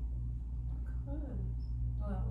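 Steady low hum of room noise, with a brief quiet vocal sound, a murmur or hum of a voice, about a second in.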